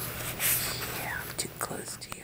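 Soft, breathy whispering by a woman, too quiet for words to be made out.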